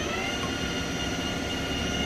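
A steady mechanical drone with a whine in it, its pitch having risen just before and now holding level.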